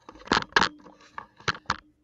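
Handling noise from a hand-held camera: five short, loud scrapes and taps as fingers rub and knock close to its microphone.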